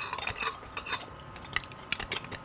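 A metal table knife scraping and clicking against the inside of a cooked beef bone while marrow is dug out: a quick run of scrapes at the start, then scattered single clicks.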